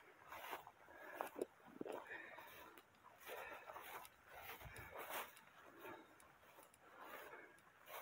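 Faint swishing of tall dry grass brushing against legs and clothing with each step, in irregular strokes.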